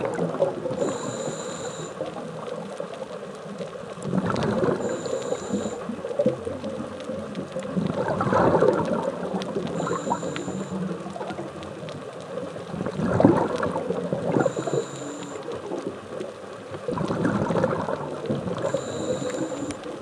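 Scuba diver breathing through a regulator underwater: a gurgling rush of exhaled bubbles about every four seconds, with a short faint high whistle between breaths.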